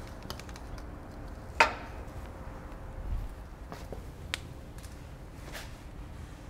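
A few sharp clicks and taps over low background rumble. The loudest is a single crisp click about a second and a half in, and fainter ones follow near the middle and end.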